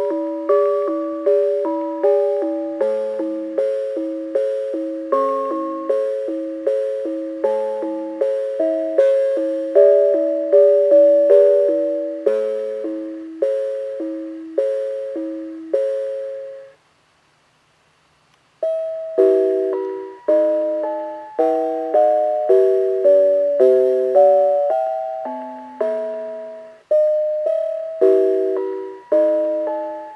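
Mr. Christmas Bells of Christmas musical decoration (1990) playing a Christmas tune on its brass bells, each note a sharp ding that rings and fades, about two notes a second. The song ends about 17 seconds in, and after a two-second silence the next tune starts.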